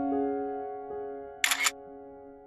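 Slow piano music with held notes. About one and a half seconds in, a single-lens reflex camera shutter snaps once, a quick double click louder than the music.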